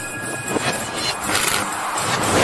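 A series of whoosh sound effects, swishes following one another, the kind that accompany an animated like-and-subscribe end screen.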